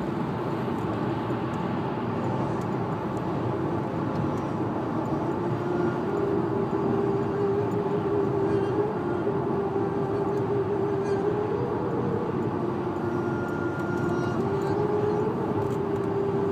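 Inside a car cruising on a motorway: steady road and engine drone, with a steady hum that steps up slightly in pitch about five seconds in.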